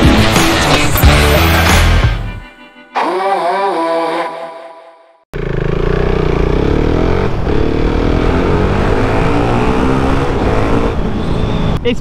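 Upbeat intro music that fades out about two and a half seconds in, followed by a short logo jingle. From about five seconds in comes a motorcycle engine under way through a tunnel, running steadily with its pitch rising slowly as the bike accelerates.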